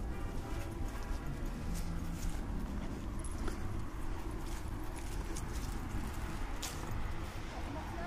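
Faint brass band music fading out over the first couple of seconds, under a steady low rumble with scattered light ticks and taps.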